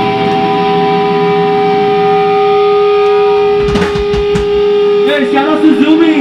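Electric guitar amplifier ringing with steady sustained feedback tones, with a few low thumps a little past the middle. Near the end a man's voice comes in through the PA microphone.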